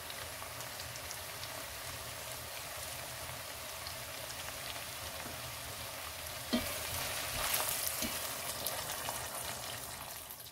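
Meat, onions and carrots sizzling steadily in hot oil in a pot, with one sharp knock about two-thirds of the way through and the sizzle a little louder after it.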